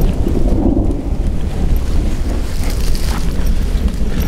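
Thunder rumbling, a loud steady low rumble, with rain falling.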